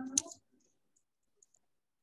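A voice trails off at the start with one sharp click, then it is almost quiet with a few faint ticks: computer mouse clicks while text is selected on screen.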